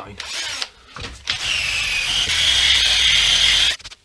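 Drill spinning a cloth buffing wheel against a guitar's lacquered finish, polishing a dull, freshly sanded spot to bring back its shine. A short burst, then a longer steady run with a high whine that stops abruptly near the end.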